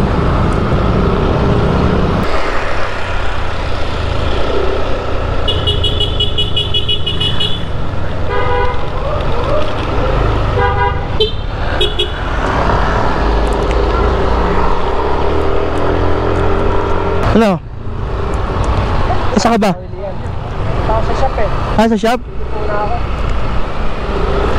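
Motor scooter riding through city traffic: a steady engine and road rumble with wind on the microphone. A vehicle horn beeps in buzzy pulses for about two seconds near the first quarter, then gives shorter beeps a few seconds later.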